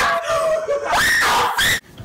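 A person's high, squealing vocal sound, its pitch rising sharply about a second in.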